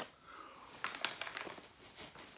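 Foil packaging and a small plastic cup crinkling and rustling as they are handled, with a few short crackles near the middle.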